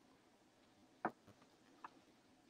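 Near silence: room tone, with one faint short click about a second in and a fainter one near the end.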